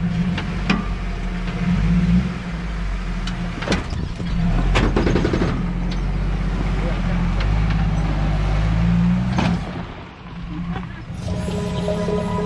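Lifted Jeep Wrangler YJ's engine revving up and down as it pulls up a rough dirt trail, with a few sharp knocks and crunches from the tyres and chassis on rock. Its sound dips about ten seconds in and background music comes in near the end.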